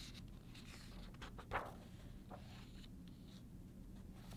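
Page of a hardcover picture book being turned by hand: faint paper rustling and sliding, with one short, louder swish about a second and a half in.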